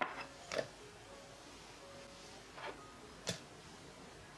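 Light knocks and clinks of small ceramic bowls being handled and set down on a tabletop while cornstarch is tipped into a plastic mixing bowl, about four short sounds in all, two near the start and two near the end.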